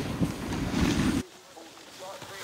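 Wind rushing over the microphone with snowboards scraping over packed snow while riding downhill. About a second in it cuts off abruptly to a much quieter stretch with faint distant voices.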